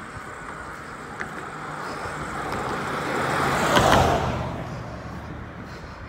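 A motor vehicle passing close by on the bridge roadway: its tyre and engine noise builds over a couple of seconds, peaks about four seconds in, then fades away.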